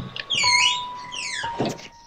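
Wooden front door being opened: a click of the latch, then its hinges creaking in high, wavering squeals for about a second and a half.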